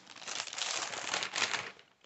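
Clear plastic wrapping crinkling as it is pulled off a new binder by hand, the crinkling dying away shortly before the end.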